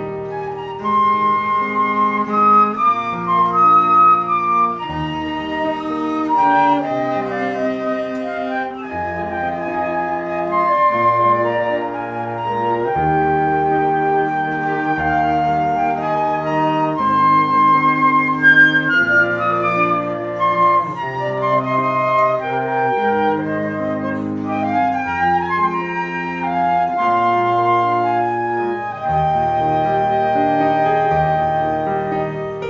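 Two concert flutes and a bowed cello playing a trio: the flutes carry sustained melody notes over the cello's held bass line.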